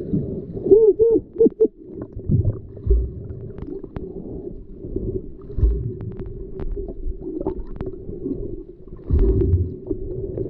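Muffled underwater sound heard through a submerged camera: water moving around the camera, with a low steady hum, a few quick rising-and-falling warbles about a second in, and several dull knocks.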